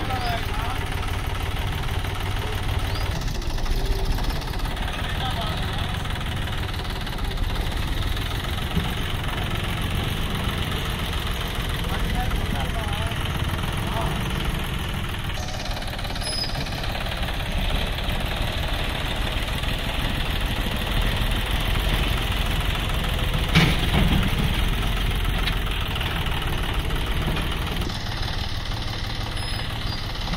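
John Deere 5050E tractor's three-cylinder diesel engine running steadily, with one brief sharp knock about three-quarters of the way through.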